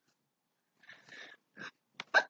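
Near silence, with a few faint breaths from the person at the microphone, the first about a second in and a short one just after one and a half seconds.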